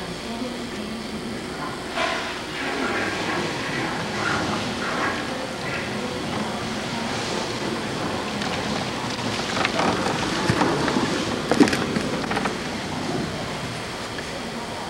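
Hurricane wind and rain blowing hard outside, heard from indoors through a window as a steady rushing noise, with a sharp knock near the end.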